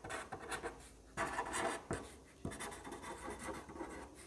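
Pen writing on paper: a run of short, irregular scratching strokes, the longest just after a second in.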